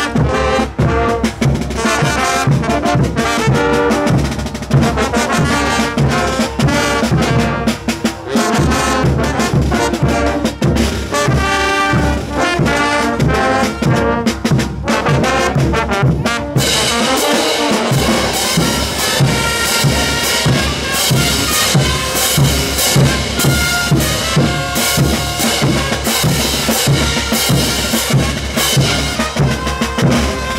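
Bolivian brass band playing morenada music: trumpets and trombones over a steady drum beat. About halfway through, the sound turns abruptly brighter and busier.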